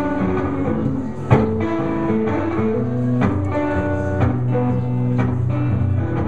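A live band playing the instrumental intro of a song: picked guitar over sustained bass notes, with a sharper accent about once a second and no singing yet.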